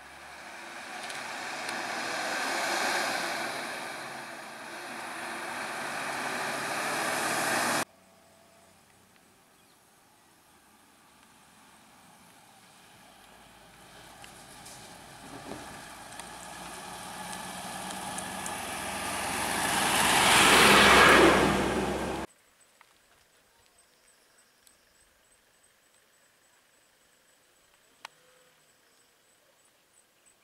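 Bus engines: one runs loudly, swelling and easing, until an abrupt cut about eight seconds in. Then another bus approaches and grows steadily louder to a peak before the sound cuts off suddenly about two-thirds of the way through. After that it is near silence, with a single faint click.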